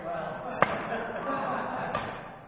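Badminton racket striking a shuttlecock: a sharp crack about half a second in, and another hit near the end, with the echo of a large gym hall.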